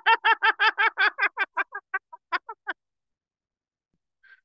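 A person's high-pitched laugh of rapid, evenly spaced pulses, about six a second, that slow and fade out a little under three seconds in.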